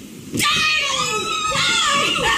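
High-pitched screaming from a performer on stage, starting suddenly about half a second in and held through the rest, its pitch wavering.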